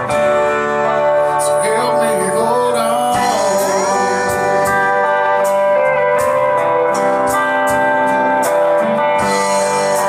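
Live country band playing: a pedal steel guitar slides between notes over electric guitar, bass guitar and a steady drum beat.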